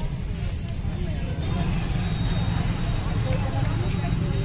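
Busy street-market ambience: indistinct voices of people talking, over a steady low rumble.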